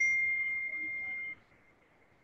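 A single high electronic beep or chime, one steady tone of about a second and a quarter that starts suddenly and cuts off.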